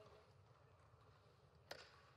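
Near silence: the low room tone of a quiet sports hall, broken once near the end by a single short, sharp knock.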